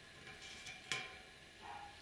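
A faint single sharp click about a second in, from a radiator bleed valve being turned by hand. No hiss of escaping air: the radiator holds only water.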